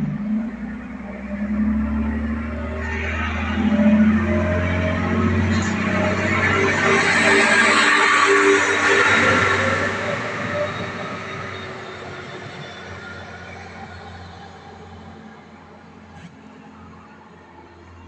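Diesel railcar pulling away along the platform. Its engine hum runs under a rushing wheel-and-rail noise that is loudest about eight to nine seconds in as the train passes close, then fades steadily as it draws away.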